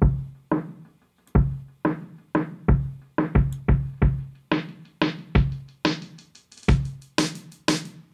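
Programmed drum beat playing back through a low-pass (high-cut) EQ filter that sweeps open, so the drums start dull and muffled and grow brighter, with the cymbals and snare top end coming through over the last few seconds.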